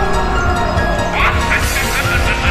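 Film score music with a held high note; about a second in, a short rising yelp-like cry breaks in, followed by a quick run of short repeated notes.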